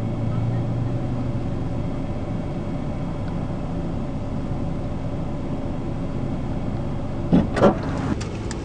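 A pickup truck's engine idling steadily, heard from inside the cab as an even low hum. A couple of short, sharp sounds come near the end.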